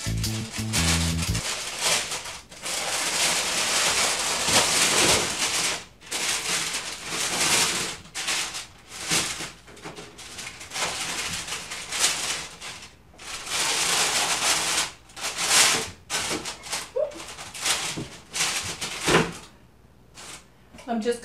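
Parchment baking paper rustling and crinkling in repeated bursts as baked loaves on it are lifted and slid off a metal baking sheet.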